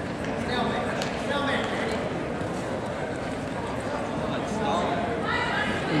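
Steady murmur of a crowd in a gymnasium, with individual voices calling out about half a second in and again near the end.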